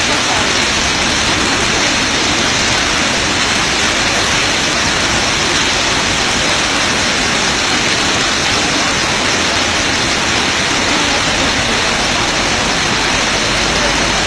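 A steady, loud rushing noise with no breaks.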